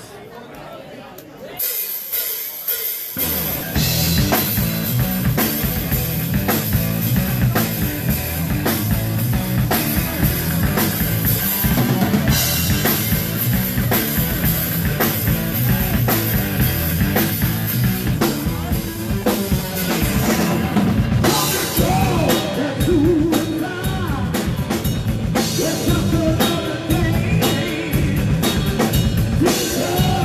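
Heavy metal band playing live: drum kit, electric guitar and bass. After a sparse opening, the full band comes in about three seconds in with a steady, driving beat.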